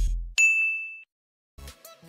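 Background music ends, and just after it a single bright ding sound effect rings for about half a second and fades out.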